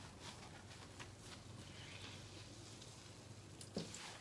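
Faint, soft wet squishing as a sponge is rolled and pressed over wet paper pulp on a screen, squeezing water out of the sheet. A single sharper click comes near the end.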